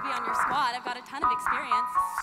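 Performers' voices over a stage backing track, with two held chime notes, one after the other, in the second half, like a doorbell's ding-dong.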